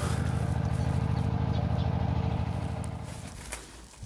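An engine running with a low, rapid, even beat, fading away over the last second or so.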